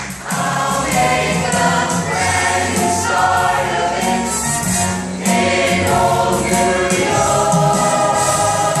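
A mixed high school chamber choir singing loudly together in harmony.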